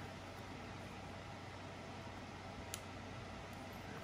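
Faint steady hum and hiss, with a single faint crack about three-quarters of the way through as a graphics card's backplate is pried loose from the thermal pads that hold it.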